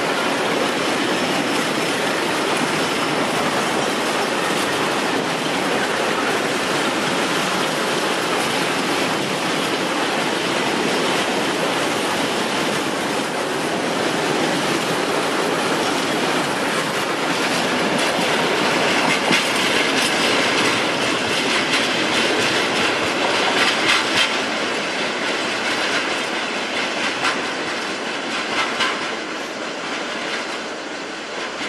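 A freight train of bogie tank wagons rolling past at close range, wheels rumbling on the rails, with a run of sharp clatters over the rail joints and points in the second half. It fades slightly near the end as the wagons move away.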